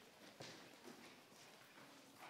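Near silence: room tone with a few faint taps.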